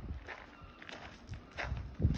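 Footsteps of someone walking on gravel, about three steps at an even pace.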